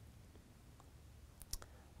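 Near silence: room tone, with two or three faint short clicks about one and a half seconds in.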